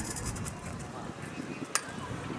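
Distant, indistinct voices of footballers lined up on the pitch, with a single sharp click near the end.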